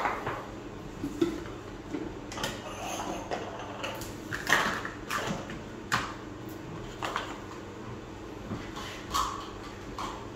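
Toiletry bottles and a small ceramic plant pot being set back down one by one on a marble vanity top: scattered light knocks and clatter.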